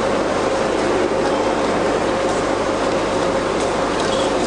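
Steady, even rushing noise with a constant hum underneath: the ambience of a large airport terminal hall.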